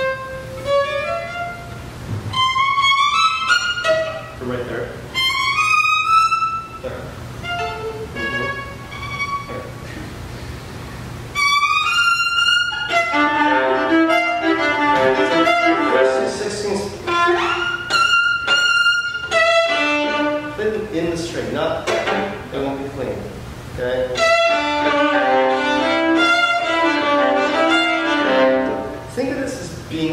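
Viola played with the bow: short phrases of notes with brief gaps between them, then from about 11 seconds in a fuller, continuous passage of quick running notes.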